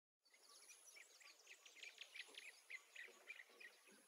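Faint birds chirping, short calls repeated a few times a second.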